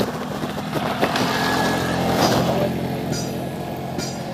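Motorcycle engine idling steadily at a standstill, with a few brief rustles over it.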